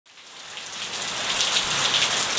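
Steady rain falling, fading in from silence over the first two seconds.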